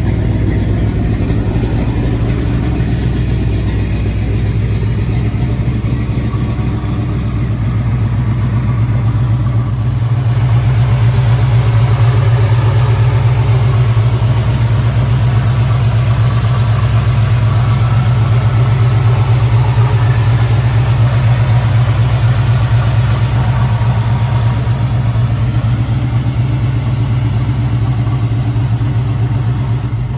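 1970 Chevrolet C-10's V8 idling steadily, heard first at the tailpipes and then, from about ten seconds in, at the open engine bay, where it sounds a little louder and brighter.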